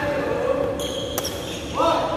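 Badminton rally: sharp racket strikes on a shuttlecock, about a second in and again half a second later, with short shoe squeaks on the court floor near the start and near the end.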